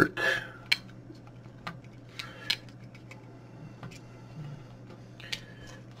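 Light, scattered clicks and taps of hands handling an opened plastic weather-display housing and its circuit board, a few irregular knocks over a steady low electrical hum.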